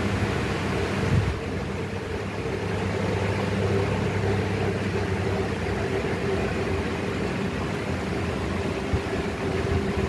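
A steady mechanical hum: a low drone with a fainter, higher steady tone above it, like a running fan or air-conditioning unit.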